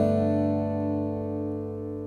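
Lowden acoustic guitar chord ringing out after being struck, its notes held in a long sustain that slowly fades.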